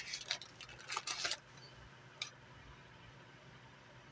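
Crinkling and rustling of a cookie bag as a cookie is taken out: a quick run of crackles in the first second and a half, then one more click a little after two seconds.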